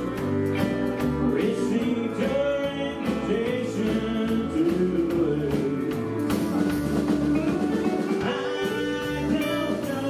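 A live country band playing together: electric guitar, bass, drum kit and pedal steel guitar, with the steel's notes gliding up and down over a steady beat.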